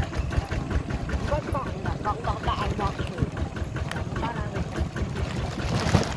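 Two-wheel hand tractor's engine running under load with a rapid, even beat, pulling a trailer along a rough dirt track, with voices over it.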